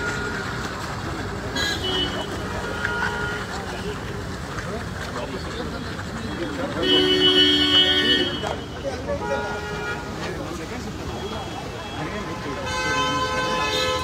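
Car horns honking in street traffic: one long honk about seven seconds in, the loudest sound, and more honking near the end, over steady traffic noise and crowd voices.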